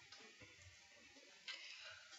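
Near silence: faint room tone, with one light tick about one and a half seconds in.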